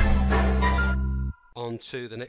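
Hip-hop loops and samples from BandLab's Classic Hip-Hop Creator Kit, triggered from a MIDI pad controller, play a beat with a strong bass and then cut off suddenly about a second and a quarter in.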